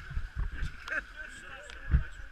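Rafters' voices and paddling on an inflatable whitewater raft, with gusts of wind rumbling on the microphone and a thump near the end.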